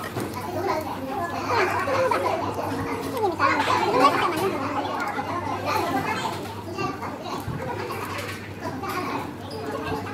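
Children's voices, children playing and talking, with a steady low hum underneath.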